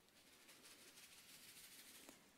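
Near silence: faint room hiss, with a very faint rustle from about half a second in.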